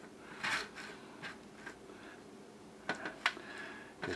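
Plastic spoon pressed into crisp broiled garlic toast to make a pocket: a few faint crunching scrapes, with one sharper click a little after three seconds in.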